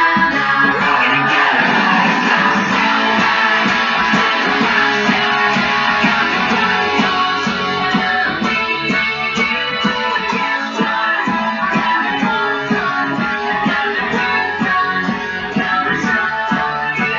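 Electric guitar playing along to a rock band track with a steady drum beat.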